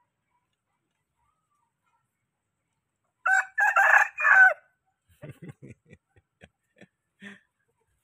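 A rooster crowing once, about three seconds in, a pitched crow of about a second and a half in three parts. Faint short clicks and low pulses follow.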